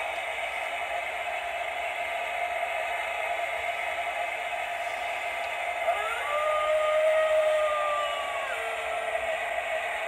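Novelty wolf picture's speaker playing a recorded wolf howl over a steady hiss. The howl comes in about six seconds in, rises briefly, holds for about two seconds and then trails off.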